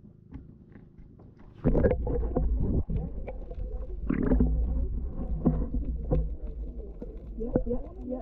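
Muffled underwater sound picked up by a submerged camera: a low rumble of moving water with many small clicks and knocks, turning loud about a second and a half in. Muffled voices from above the surface are heard through it.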